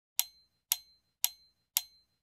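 Sharp ticks from a logo intro's sound effect: four evenly spaced ticks about half a second apart, each with a brief high ring.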